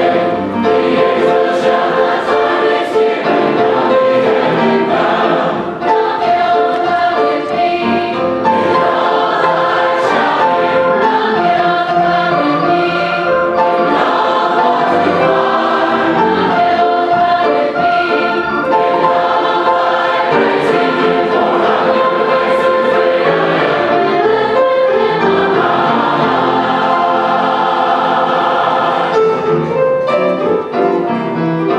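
Mixed church choir singing an upbeat gospel song in full harmony, accompanied by piano.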